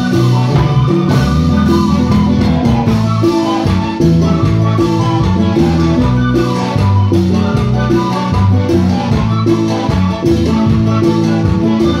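A live Latin dance band playing an upbeat number, with a repeating bass line, drums and percussion, and sustained horn and keyboard notes above.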